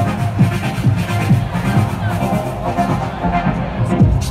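Techno played loud over a club sound system, driven by a steady kick drum at about two beats a second with hi-hats on top.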